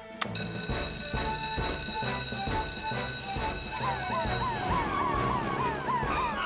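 Cartoon fire station alarm ringing as a steady high tone right after the red alarm button is pressed, over rhythmic music. From about four seconds in, the alarm gives way to a fire engine siren wailing quickly up and down, about three times a second.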